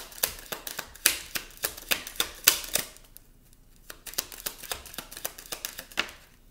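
A deck of Kipper fortune-telling cards being shuffled by hand: rapid clicks and slaps of the cards for about three seconds, a brief lull, then more clicking.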